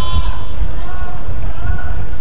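A man's voice, faint and drawn out, over a steady low rumble.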